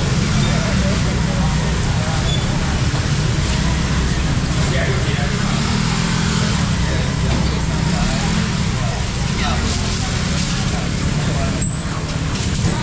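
Busy covered-market ambience: a steady low rumble with indistinct voices of vendors and shoppers in the background.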